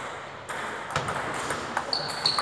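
Table tennis rally: the celluloid ball clicks sharply off the rubber-faced paddles and the table, a quick series of hits about half a second apart.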